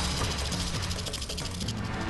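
Western diamondback rattlesnake shaking its tail rattle: a steady, rapid dry buzz, the snake's defensive warning signal. Low background music plays beneath it.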